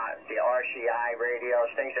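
A man talking over HF single-sideband radio, heard through a Codan transceiver's speaker. The voice is continuous, thin and narrow, with a sharp cut-off of the upper frequencies.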